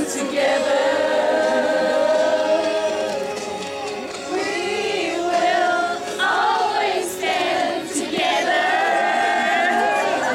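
A group of voices singing together in Afrikaans, a choir-like chorus holding long notes. A lull comes about four seconds in, then the singing picks up again.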